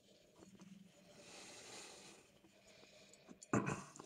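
Faint, breathy hiss of a wine taster drawing air in at a glass of wine, with a few small clicks, and a brief louder sound near the end.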